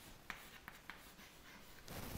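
Chalk writing on a chalkboard: faint scratching with a few light taps as the letters are written.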